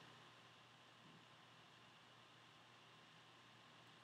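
Near silence: faint room tone with a low steady hiss.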